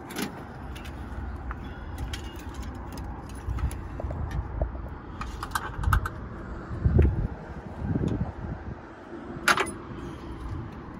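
Scattered light metallic clinks and rattles from handling stripped car-body parts, over low rumbling bumps, with one sharper metal clink near the end.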